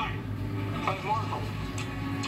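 Television audio playing in the room: a sitcom's voices, one short burst of speech about a second in, over a steady low hum.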